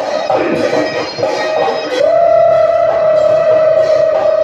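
Live Bihu folk music. About two seconds in a single high note begins and is held steadily past the end, over a busier melody before it.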